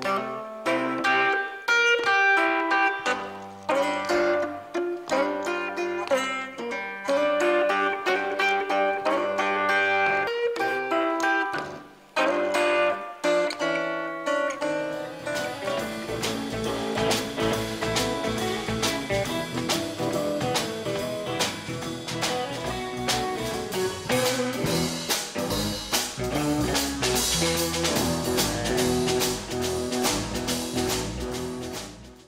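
Live blues music: a guitar picks a blues line on its own, then drums and the rest of the band come in about halfway through with a steady beat.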